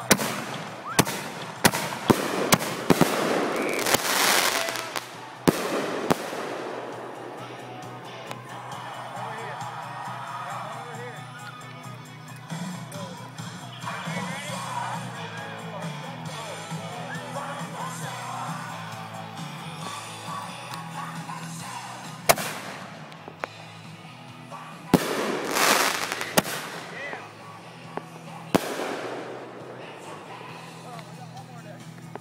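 Fireworks going off: a rapid run of sharp bangs and crackles over the first six seconds, then a lull, then another cluster of bangs near the end as aerial shells burst. Rock music and voices play faintly underneath.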